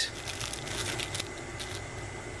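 Small clear plastic zip-lock bag of coin cell batteries crinkling faintly and intermittently as it is handled.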